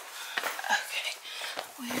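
Soft, muttered speech with a few light clicks and knocks of handling.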